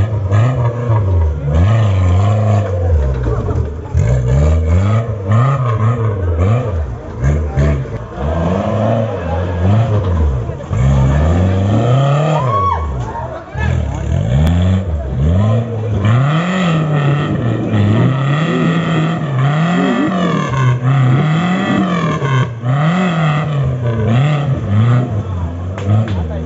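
Off-road 4x4 jeep engine revving hard again and again under load, its pitch rising and falling every second or two as it works up a muddy slope.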